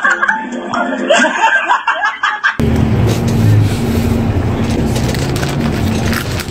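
Music for about the first two and a half seconds, then an abrupt cut to the cabin of a moving coach bus: a steady low engine and road rumble with a faint steady hum.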